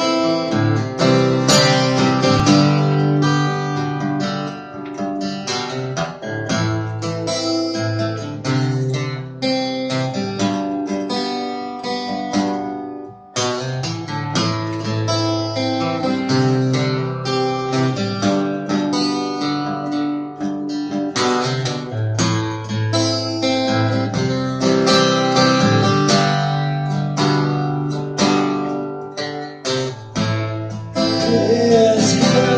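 Solo acoustic guitar strumming chords in a steady rhythm, with a short break about thirteen seconds in.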